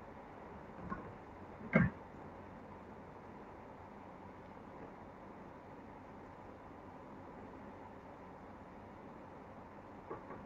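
A light tap about a second in and a louder knock just before two seconds: small containers being handled and set down on a tabletop. Then only faint room tone.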